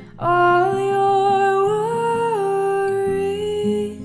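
A woman's voice holds one long sung note, hum-like, stepping up briefly in pitch about halfway through and dropping back, over gently played acoustic guitar.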